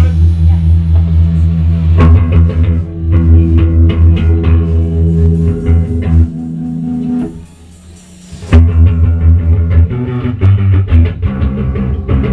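Post-punk band playing live, led by heavy bass guitar lines with guitar over them. About seven seconds in the music drops away for about a second, then the full band comes back in.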